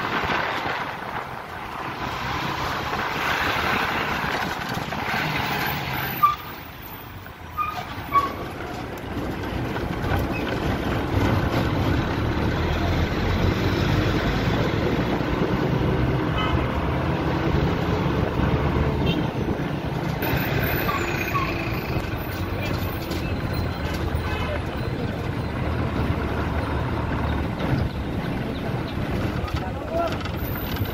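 Bus stand traffic noise: bus engines running with a low rumble that grows louder about ten seconds in, two sharp knocks between six and eight seconds, and voices in the background.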